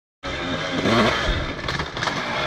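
Enduro dirt bike engine revving up and down as the bike comes closer.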